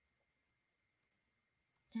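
Near silence broken by three faint short clicks of a computer mouse, two about a second in and one just before the end.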